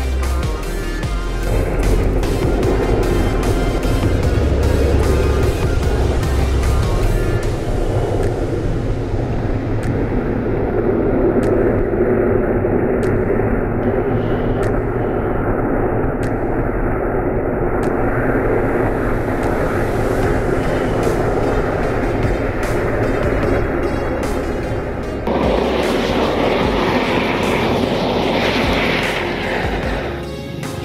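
Several large flower pot fountain fireworks burning at once, a loud steady rushing noise, with background music over it.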